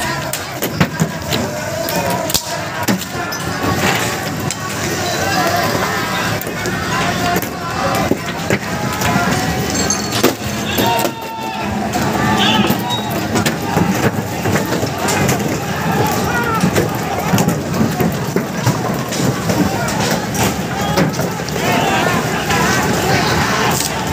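A crowd of people shouting over one another in a street clash, with frequent sharp knocks and clatter from thrown stones and debris.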